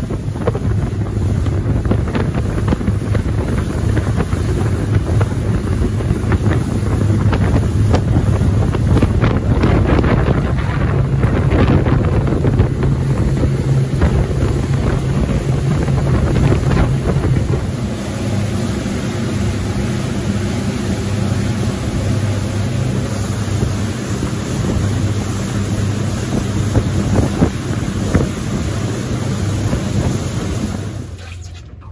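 A boat's engines running at speed, a steady low drone with wind buffeting the microphone. A little over halfway through, the engine note settles lower and the sound gets slightly quieter.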